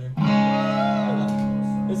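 Electric guitar chord struck once about a quarter second in and left ringing out.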